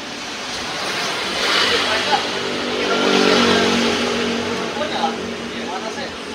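A motor vehicle passing on the street, its engine growing louder to a peak around the middle and then fading away.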